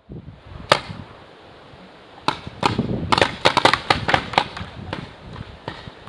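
Paintball markers firing: a single pop about a second in, then a rapid string of pops through the second half.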